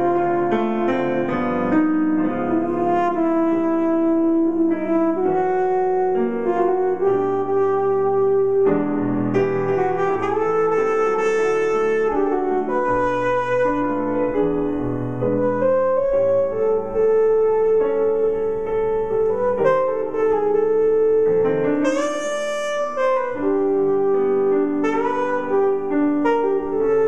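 Jazz piano accompanying an EVI (electronic valve instrument, a breath-controlled wind synthesizer) that plays long, held horn-like melody notes over piano chords. Near the end the EVI's line rises into a brief, brighter run of higher notes.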